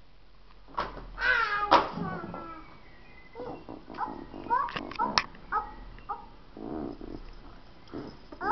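A small child's high-pitched vocalizing: a loud squeal about a second in, followed by short babbled syllables and another brief call near the end.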